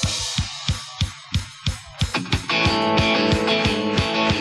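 Live country band kicking off a song: a drum kit plays a driving beat with cymbals, and about two and a half seconds in electric guitar and the rest of the band come in with full, held chords.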